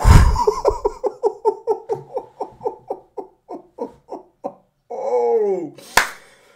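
Man laughing heartily: a long run of short 'ha' pulses that slows and fades away, then one drawn-out vocal sound falling in pitch near the end. The laughter opens with a loud low thump.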